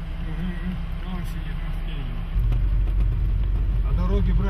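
Vehicle engine droning heard from inside the cabin, a low steady rumble that steps up louder a little over two seconds in, with faint murmured voices in the first half.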